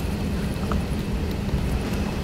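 Steady low rumble of room noise with a constant electrical hum, as heard through a talk's microphone or PA; a faint tick about two-thirds of a second in.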